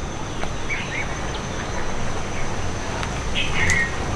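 Short bird chirps, a couple about a second in and a louder run near the end, over a steady high insect note and a low steady rumble.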